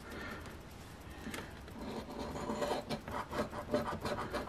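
A coin scratching the coating off a scratch-off lottery ticket: quick repeated scraping strokes, faint at first and growing busier after about two seconds.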